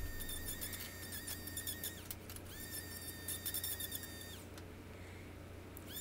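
Small cordless die grinder deburring the sheared edge of thin stainless-steel sheet: a high-pitched whine in two runs of about two seconds each, with a short break between, the pitch falling as it winds down after each run.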